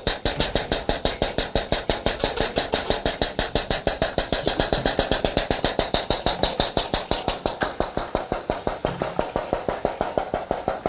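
Air-operated diaphragm pump on a PIG filter running steadily, a fast even clatter of about five to six strokes a second, as it pushes product through the filter papers.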